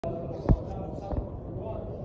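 Indistinct murmur of a crowd of voices in a large hall, broken by two dull, deep thumps, the louder one about half a second in and a second just after one second.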